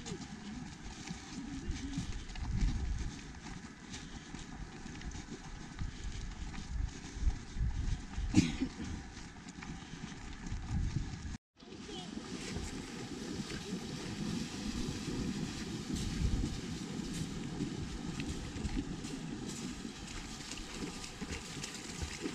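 Outdoor field ambience with low rumbling wind noise on the microphone and indistinct voices of a group walking; the sound drops out for an instant about eleven seconds in, then resumes.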